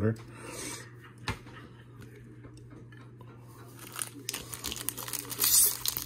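Soft rubbing of a trading card being slid into a plastic sleeve and toploader, with one light click about a second in. Near the end, growing crinkling as a foil trading-card pack is torn open.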